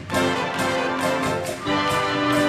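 A wind band plays: flutes and brass hold chords over a steady percussion beat, with new chords struck just after the start and again near the end.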